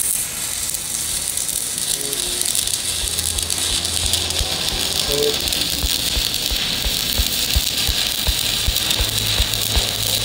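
Stick-welding arc on a broken steel camshaft, crackling and sizzling steadily as the electrode burns. From about four seconds in, short low thumps come two or three times a second.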